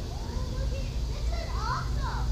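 Distant, unintelligible voices of people, children among them, calling out, with one clearer rising and falling call near the end. A steady low rumble runs underneath.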